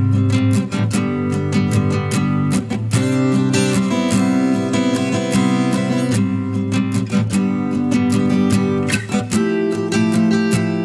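Background music: a strummed acoustic guitar playing a steady rhythm.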